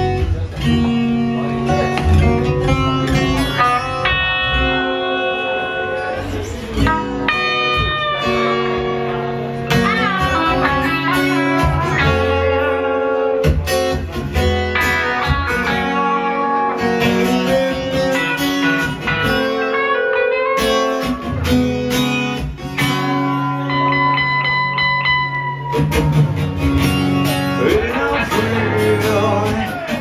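A live band playing a guitar-led passage, with electric and acoustic guitars over a bass guitar.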